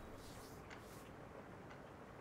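Faint clock ticking, about once a second, over near-silent room tone.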